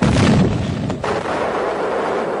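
A loud explosion-like blast, a shell or bomb going off, with a second sharp crack about a second in and a rumble that carries on after it.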